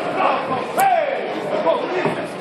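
Spectators' and cornermen's voices calling out in a large hall, with one loud shout that rises then falls in pitch just under a second in, and a single brief sharp smack just before it.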